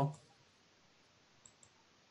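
Two faint, short clicks close together about one and a half seconds in, over near silence; the end of a spoken word at the very start.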